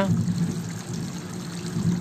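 A steady rushing noise with a low hum beneath it, holding even throughout, with no distinct events.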